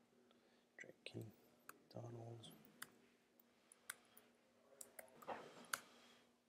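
Faint, scattered clicks of a computer mouse and keyboard, roughly one a second, as entries are typed and clicked in, with a little faint murmuring under the breath between them.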